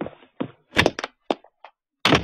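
A run of about five sharp, irregularly spaced thuds, the loudest a little under a second in.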